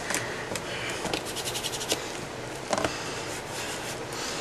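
Fingers rubbing metallic finish paste onto a textured paper collage frame: a run of quick, scratchy rubbing strokes, thick in the first half and sparser later.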